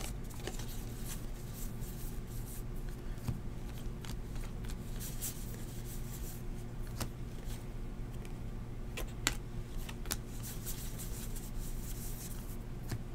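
A stack of Bowman baseball trading cards being flipped through by hand, one card at a time: soft, scattered clicks and slides of card against card. A faint steady low hum runs underneath.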